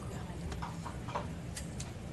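A few light clicks and taps over a steady low room hum, with faint murmured speech.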